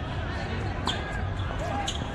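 Two sharp knocks about a second apart, balls being struck or bouncing on the courts, over distant voices and a low steady rumble.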